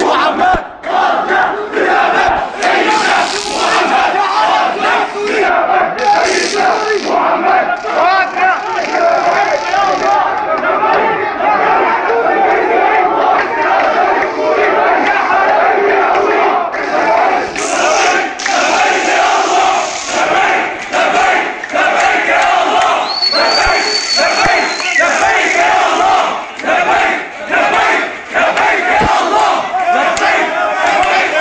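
Large crowd of protesters shouting and chanting slogans together, loud and continuous, with a brief shrill tone about two-thirds of the way through.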